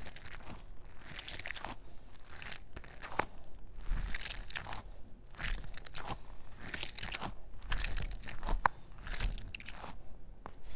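Close-miked crunching: a string of short, irregular crunches, one after another, with no steady rhythm.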